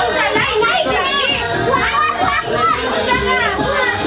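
A group of children chattering and shouting over one another all at once, with music playing underneath.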